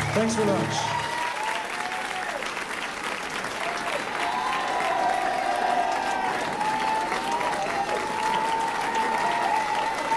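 Live audience applauding, with shouts and whoops from the crowd. The last held low note of the song stops about a second in.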